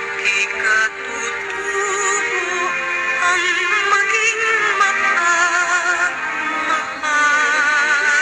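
Filipino patriotic song: a child's voice singing a melody with vibrato over backing music.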